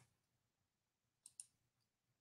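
Near silence: faint room tone with a couple of small clicks about a second and a half in.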